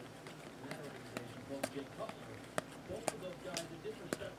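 Baseball cards being flipped through one at a time in the hands: a run of short, sharp clicks and snaps as stiff glossy card edges slide and flick past each other.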